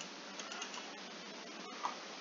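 A few faint computer mouse clicks over steady hiss from a poor microphone, the sharpest click coming near the end.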